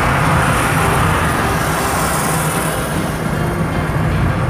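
A car driving at steady speed, heard inside the cabin: a continuous rumble of engine and tyre-on-road noise with no change in pace.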